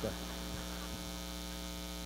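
Steady electrical mains hum in the audio, a low buzz that stays even and unbroken.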